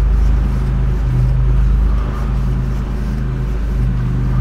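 A loud, steady low hum from a running motor or machine.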